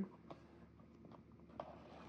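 Faint, scattered light taps and rustles of hands handling an opened cardboard box and the soft pouch inside it.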